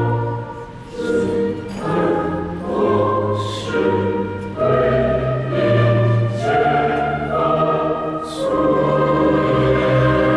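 A national anthem sung by a choir with orchestral accompaniment, in sustained sung phrases with a brief dip about a second in.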